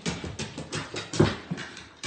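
A dog's paws knocking quickly on wooden stair treads as it runs down a flight of stairs, a rapid uneven run of footfalls with the loudest about a second in.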